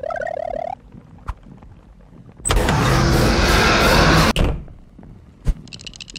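Cartoon sound effects: a brief wavering pitched squeak, then a loud rush of noise lasting about two seconds that cuts off suddenly, and a single click shortly after.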